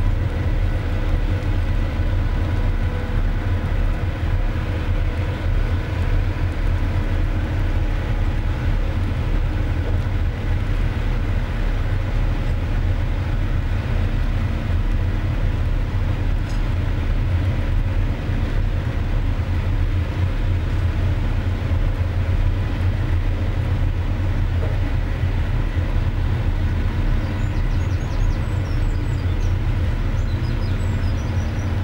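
The Condor Express high-speed catamaran ferry's diesel engines run steadily: a low drone with several steady tones above it.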